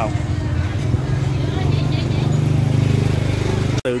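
A motorbike engine running close by, a steady low hum that grows stronger about a second in.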